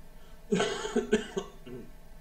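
A man coughing with his hand to his mouth: three quick coughs starting about half a second in, then a fainter fourth near the end.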